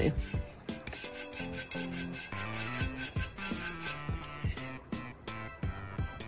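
Dry chip brush sweeping loose glitter off a glitter-coated tumbler in repeated rubbing strokes, over soft background music.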